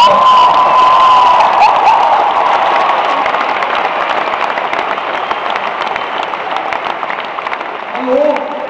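Audience applauding and cheering, with a high cheer in the first second. The clapping fades gradually toward the end.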